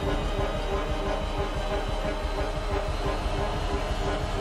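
Trailer score and sound design: a dense, loud, rhythmic mechanical rumble with a repeating pulsing tone over it, driving steadily with no break.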